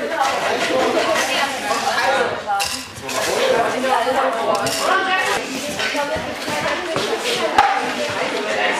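Young people chattering in a large tent, with clinks of dishes and cutlery as they serve themselves at a buffet table. The loudest event is a sharp clink near the end.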